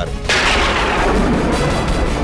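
A sudden booming whoosh of flaring fire, a dramatic sound effect, bursting in about a quarter second in and dying away slowly, over background music.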